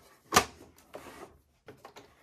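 The hinged plastic front looper cover of a Brother 1034D overlocker snapping shut with one sharp click, followed by soft rustling and two light clicks near the end.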